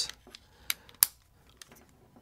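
Small clicks of a 3.5 mm cable plug being handled and pushed into a Sennheiser AVX wireless receiver: two sharp clicks about two-thirds of a second and a second in, with faint handling ticks between.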